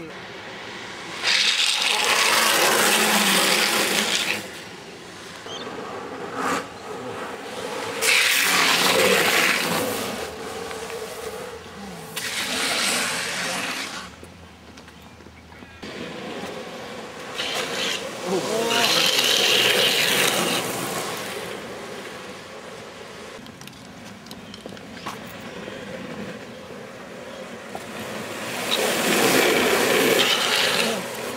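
Longboard urethane wheels sliding on asphalt as riders drift a corner: a series of long, rasping slides, each lasting a couple of seconds, about five across the stretch, with quieter rolling between them.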